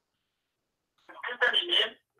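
Silence for about a second, then a person talking over a telephone-quality call line, the words unclear.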